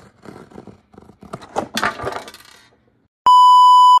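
Cardboard blind box being handled, with soft crinkling and a few clicks for the first two and a half seconds. After a short pause, a loud, steady, flat beep tone starts near the end and cuts off abruptly: a bleep added in the edit.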